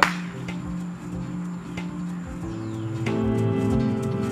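Background music with held chords and a steady beat. Right at the start, one sharp clap of chalked hands, the loudest sound here.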